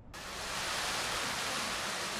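A steady, even hiss of background noise that comes in suddenly just after the start.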